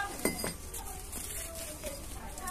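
Hard, dried chunks of red dirt being broken with a small metal tool and by hand: a few sharp clinks and cracks in the first half second, then soft crumbling.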